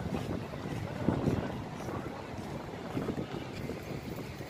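Wind rumbling on the microphone over outdoor ambience, with faint passing voices about a second in.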